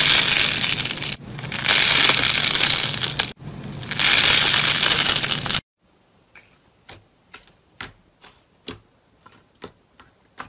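Blue foam slime packed with tiny beads being stretched and squeezed by hand: three long, loud crackling stretches. After a sudden cut, a string of short sharp clicks, about two a second, as fingertips press on foil-covered bumps.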